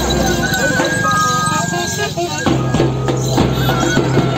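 A bamboo flute playing a folk melody in held high notes, breaking off briefly about two seconds in, over a steady rhythm of drum beats.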